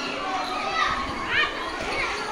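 Many children's voices talking and calling out at once, with one high child's voice rising sharply in pitch about a second and a half in.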